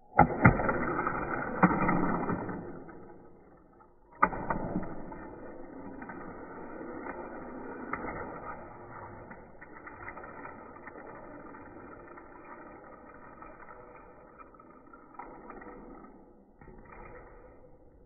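Die-cast Hot Wheels car run on plastic track and ramps: a sharp click, then a few seconds of loud clattering and rolling. A second click comes about four seconds in, then rolling noise that slowly fades and dies out near the end.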